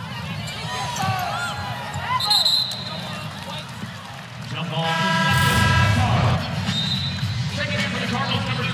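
An arena shot-clock horn sounds once, a steady tone lasting about a second and a half about five seconds in, as the shot clock runs out. Before it, sneakers squeak on the hardwood court over steady crowd noise.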